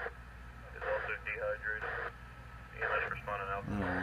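A Uniden BCD536HP scanner's speaker playing thin, voice-like received audio in two short bursts, about a second in and about three seconds in, over a steady low hum, while stopped on 137.225 MHz AM in the military air band. The owner takes the signal for a spurious emission, not a real transmission.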